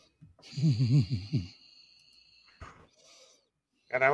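A man's voice giving a wavering, hoot-like 'whooo' of about a second, with its pitch swinging up and down several times. It comes just after the music stops, and a faint high steady tone and a short click follow.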